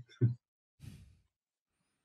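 A man's brief hesitant 'uh', then about half a second later a short breath out, like a sigh.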